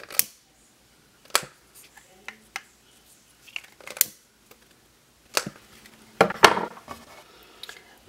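A lighter clicked about six times at uneven intervals, with light rustling of grosgrain ribbon between the clicks.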